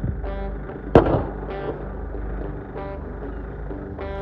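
A single shotgun shot about a second in, sharp and loud with a short ringing tail, fired at geese on the water; the shot misses.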